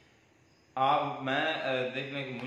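A short near-silent pause, then a man's voice speaking in long, drawn-out tones from about three-quarters of a second in.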